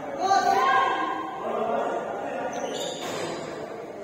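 Players' voices calling out, echoing in a large indoor basketball gym during a game, with a ball bouncing on the hardwood floor. The voices are loudest in the first second and a half.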